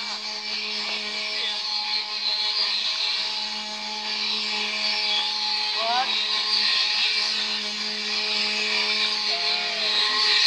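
Traditional wooden ox cart loaded with corn, its axle 'singing': a steady, droning whine on one pitch from the wooden axle turning in its wooden bearings as the cart rolls. A short rising cry cuts through about six seconds in.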